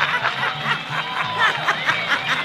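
People snickering and chuckling in short bursts of laughter over background music with a low bass line that steps between notes.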